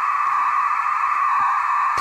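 Audio from an RTL-SDR receiver tuned to the QO-100 satellite through a Sky satellite LNB, played from the tablet's speaker. It is a steady hiss cut off above and below, with a held, tone-like note at its centre.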